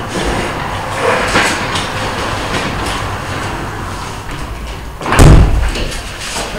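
Rustling and shuffling movement noise, with a loud, low thump about five seconds in.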